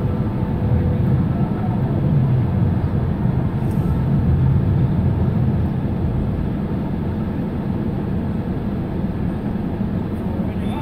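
Steady low rumble of a stationary car idling, heard from inside the cabin.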